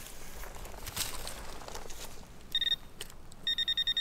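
Handheld metal-detecting pinpointer beeping in a dug hole: a short high beep about two and a half seconds in, then a rapid run of beeps near the end as the probe closes on a buried metal target, a Civil War bullet. Before the beeps there is faint scraping of soil with one knock about a second in.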